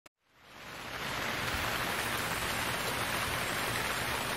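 A steady rush of hiss like rain, fading in over about the first second and holding level.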